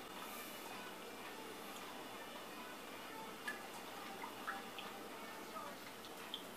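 Faint wet stirring of a brush in a bowl of watered-down tacky glue, with a few light taps about halfway through and near the end.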